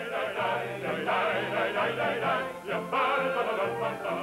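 Music with voices singing a melody.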